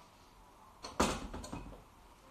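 Two quick knocks about a second in, the second louder, with a brief clatter after; otherwise a quiet room.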